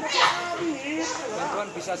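Crowd of people talking over one another, several voices at once, with a man's voice speaking near the end.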